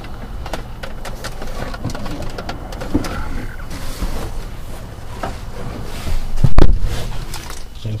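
Clicks, rustles and small knocks of handling noise as the camera is moved around inside a pickup truck's cab, over a low rumble, with one loud thump about six and a half seconds in.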